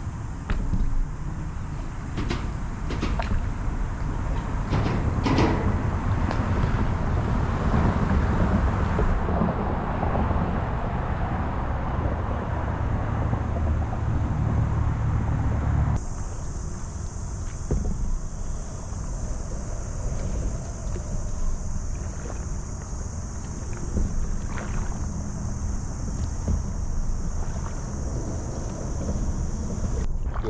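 Steady low rumble of wind and water on the microphone of a camera riding on the nose of a paddleboard gliding over calm water, with a few light splashes or knocks in the first half. About halfway through, the sound changes abruptly: the rumble drops and a steady high hiss sets in.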